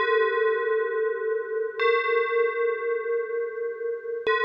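A bell tolling slowly. It is struck at the start and again about two seconds in, and each stroke rings on with a wavering, pulsing hum underneath.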